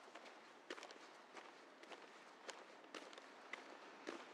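Faint footsteps of someone walking on a paved railway platform, about six steps at an even pace.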